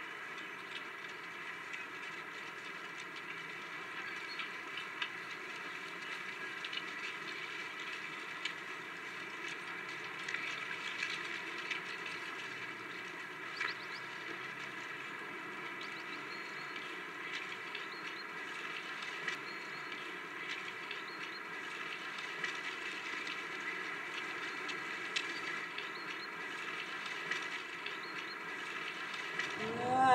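A quiet, steady drone of several held tones under an even hiss, with faint scattered clicks.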